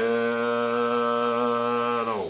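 A man's voice holding one steady low note, a hum or long drawn-out vowel, into a CB microphone to modulate a linear amplifier under test.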